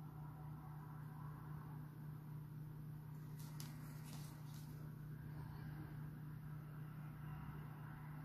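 Quiet room tone with a steady low hum, and a few faint rustles and ticks about three to four seconds in as the miniature on its cork handle is handled and turned.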